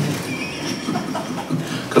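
Murmuring and laughter from a room of people, with no single voice standing out.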